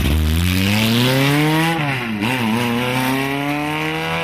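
Racing car engine accelerating hard away on full throttle, its pitch climbing, dropping at an upshift about two seconds in, then climbing again.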